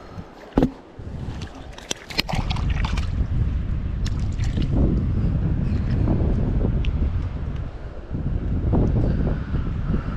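Wind buffeting the camera microphone in a steady low rumble from about two seconds in. There is a sharp knock just under a second in and a few clicks around two seconds.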